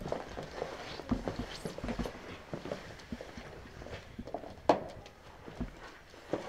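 Drinking glass and small objects handled on a paper board on a wooden floor: scattered light taps and clicks with clothing rustle, and one sharper knock about three-quarters of the way through.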